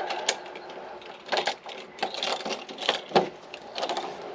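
Clicks and rattles from a house's front door being unlocked and its knob and latch worked, as the door is opened. The clicks come irregularly, in small clusters through the whole time.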